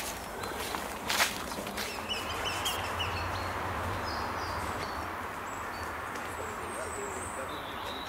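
Short, high bird calls scattered over a steady outdoor background with a low rumble, plus one sharp knock about a second in.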